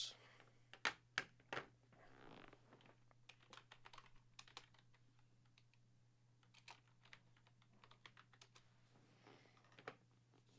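Faint typing on a computer keyboard: a few louder clicks in the first two seconds, then quick, irregular light key clicks.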